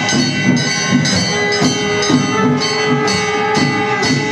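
Gavari folk music on percussion: a struck metal plate ringing over a drum, in a steady beat of about two strokes a second.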